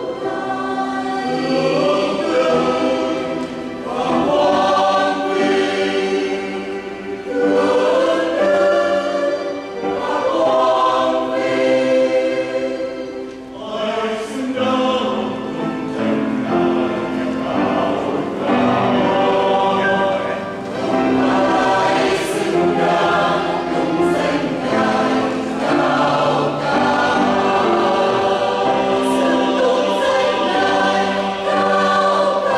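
A mixed church choir of women and men singing a Vietnamese Catholic hymn in harmony, in sustained phrases a few seconds long with short dips between them.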